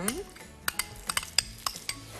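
Kitchen utensils and bowls clinking as food is mixed and spooned: about six short, sharp clinks after the first half second.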